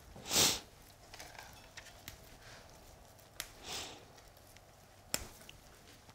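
A person sniffing twice, short breaths through the nose about three seconds apart, with faint clicks and rustles of hands wiring spruce branches between them.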